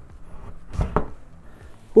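A single dull thump about a second in as a Thermaltake Core P3 PC case is seated onto an Ergotron HX monitor-arm mount.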